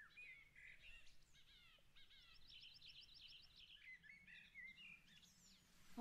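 Faint birdsong from a forest ambience track: several birds chirping, with a fast trill of about ten notes a second from about two seconds in.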